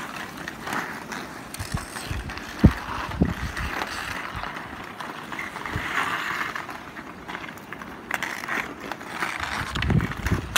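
Ice hockey skate blades scraping and carving on outdoor rink ice, with a few sharp knocks of hockey sticks on a puck, the loudest about two and a half seconds in.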